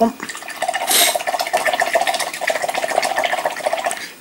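A paintbrush swirled and rattled fast in a glass water pot, clicking rapidly against the jar so that the glass rings steadily, with a brighter splash about a second in: the brush being rinsed out before a new colour.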